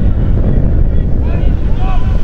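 Strong wind buffeting the microphone, a loud low rumble throughout, with a few distant shouts from players on the pitch.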